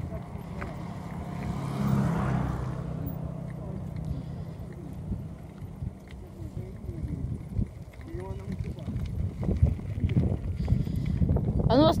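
Wind rumbling on the microphone and bicycle tyres running over a rough dirt track while riding, with a louder swell of noise about two seconds in and more bumps and rattles in the last few seconds.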